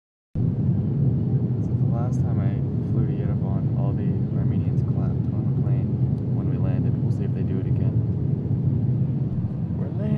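Steady rumble of an airliner's cabin on its approach to land: engine and airflow noise, with voices talking quietly over it.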